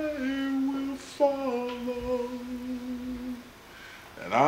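A single voice humming or singing a slow, hymn-like tune in long held notes, with a short break about a second in.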